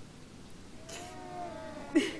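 A child crying, a high wavering wail that starts about a second in and ends in a sharp sob.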